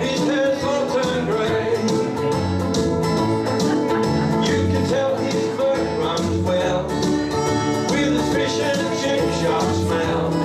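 A ukulele band strumming chords together in a steady rhythm, with low bass notes underneath: an instrumental break between sung verses.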